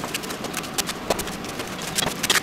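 Kitchen knife chopping cabbage on a plastic cutting board: irregular sharp knocks of the blade hitting the board, a few a second, with the crunch of cut leaves.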